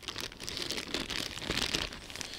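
Clear plastic bag crinkling and rustling as it is handled, a continuous patter of small crackles.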